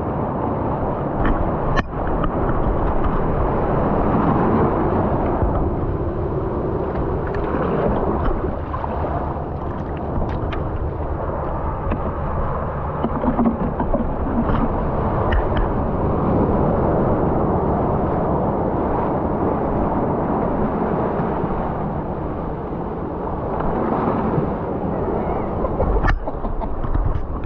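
Shallow sea water washing and swirling around mussel-covered rocks, heard close up as a loud, steady rumbling churn, with a few sharp clicks, the clearest about two seconds in.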